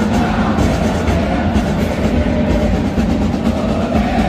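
Football stadium crowd noise: fans singing and chanting with drums beating, loud and steady.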